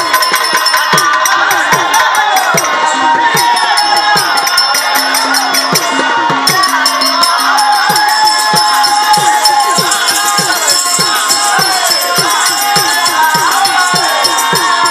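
Live folk-theatre music: hand drums playing a fast, steady beat at about four strokes a second, with small cymbals or jingles clicking on top and a wavering melody line.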